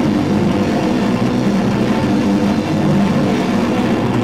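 A live metalcore band playing loud, heavily distorted electric guitars and bass: a dense, steady low wall of sustained chords.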